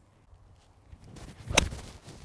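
A golf iron strikes a ball in one sharp crack about one and a half seconds in.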